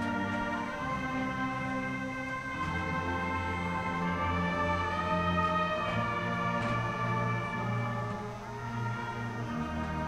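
Marching band playing a slow alma mater in long, held chords that change every second or two, heard from down at the end of the field.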